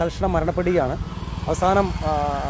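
A man talking, with a steady low rumble beneath the voice.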